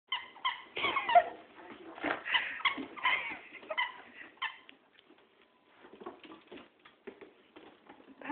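Two small dogs playing rough on a hardwood floor. For about the first four and a half seconds there is a quick run of short high squeaks and yips mixed with growling, then only quieter scuffling and claw patter.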